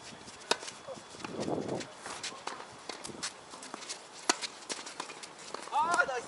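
Tennis ball struck by rackets and bouncing on a hard court during a doubles rally: a sharp pop of the serve about half a second in, then further hits and bounces, with another loud hit about four seconds in. A voice calls out near the end.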